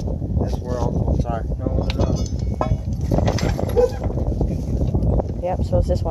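Indistinct talking over a steady low rumble, with a few short clicks.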